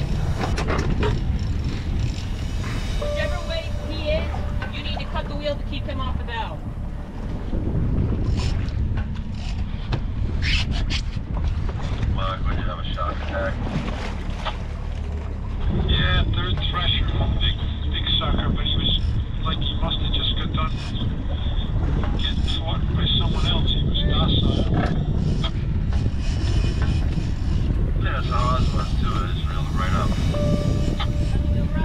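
A small boat's engine running, with wind buffeting the microphone and a steady low rumble, under talk among the crew. From about halfway through, a steady high-pitched tone sounds for about nine seconds.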